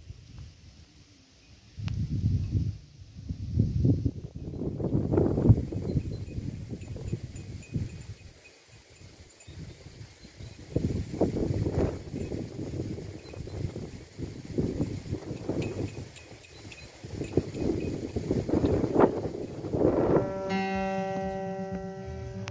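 Wind buffeting the microphone in irregular gusts, with faint tinkling of small bells behind it. Near the end, an acoustic guitar starts playing.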